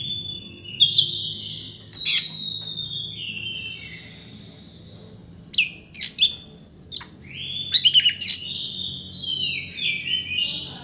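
Oriental magpie-robin singing: whistled phrases with sliding, falling notes, a raspy harsh note, and quick clusters of sharp, clipped notes partway through and again near the end.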